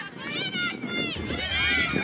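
High-pitched voices shouting and calling out during a soccer match: a few short calls in the first second, then a longer drawn-out shout near the end, over steady outdoor field noise.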